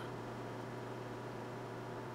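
Faint room tone with a steady low electrical hum; no distinct sounds stand out.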